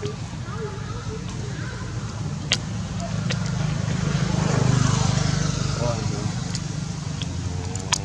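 A motor vehicle's engine drone that grows louder toward the middle and then fades, as a vehicle passing by, with faint voices in the background and two sharp clicks.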